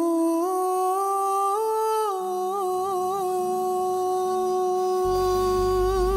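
Live band playing: a single mellow melody line of held notes with small turns, joined by a low bass note about two seconds in and by the fuller low end of the band about five seconds in.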